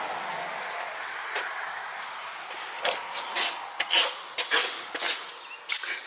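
A cluster of sharp clicks and knocks from about three seconds in: an exterior door's handle and latch being worked as the door is opened and stepped through, over a steady hiss that eases off in the first second.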